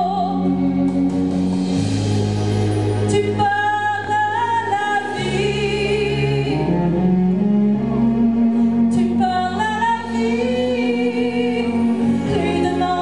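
A woman singing a French song live into a microphone, with long wavering notes, over a musical accompaniment of sustained bass notes that change every second or two.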